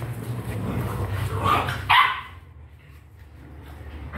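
Dalmatian puppy barking: two short barks about a second and a half in, the second one louder.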